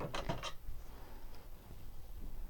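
Craft paper scraps rustling and crinkling as they are handled, with a quick cluster of crinkles in the first half second, then fainter rustling.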